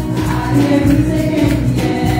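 Three women singing a gospel worship song together into microphones, with keyboard accompaniment.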